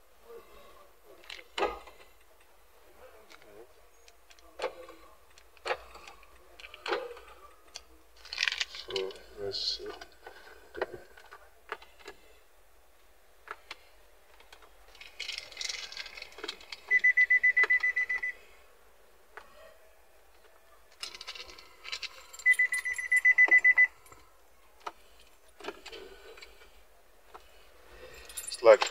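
Plastic bag crinkling and scattered handling clicks, then the Nissan Pathfinder's interior warning beeper sounds twice, each a rapid high beeping about a second and a half long, as the push-button start fails to start the car; a low battery is suspected.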